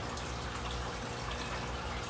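Aquarium filter running: a steady trickle of water with a faint hum underneath.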